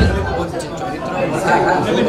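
Several people talking at once in a large room: background chatter, just after loud bass-heavy music cuts off at the start.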